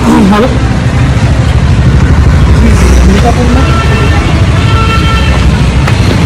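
Street traffic on a busy market road: a steady rumble of passing cars and motorbikes. Brief thin tones sound in the second half, and voices are faint in the background.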